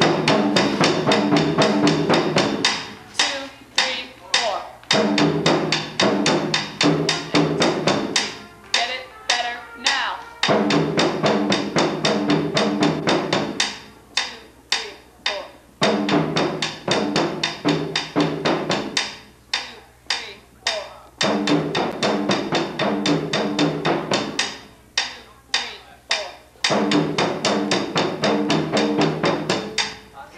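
A band percussion section playing a fast drum passage of rapid strokes. The same short phrase of about five seconds is played over and over with brief breaks between: the players are rehearsing a few bars on repeat.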